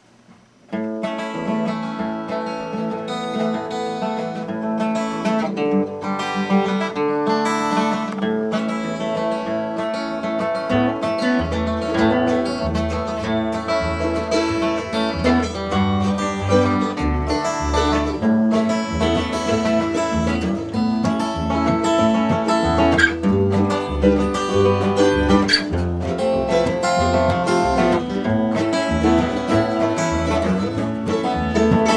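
Acoustic string band playing an instrumental bluegrass-style tune on acoustic guitar and mandolin, starting a moment in. An upright bass comes in about eleven seconds later.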